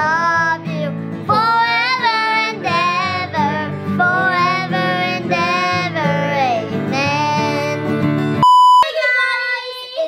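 A young girl singing a country song over a strummed acoustic guitar. About eight and a half seconds in, the music cuts off for a brief, loud, steady beep, followed by a voice without the guitar.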